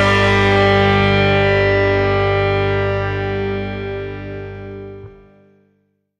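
The last chord of a punk rock song on distorted electric guitar, ringing out and slowly dying away over about five seconds. It ends with a small click, then silence.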